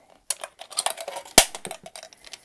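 Aluminum drink can crackling and clicking as a utility knife blade is worked into and through its thin wall, with one sharp, loud click a little past halfway.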